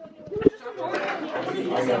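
Chatter of several students' voices in a classroom, with a short knock about half a second in.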